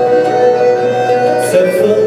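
Live band music: accordion holding sustained chords over acoustic guitar and a small plucked string instrument, moving to a new chord about one and a half seconds in.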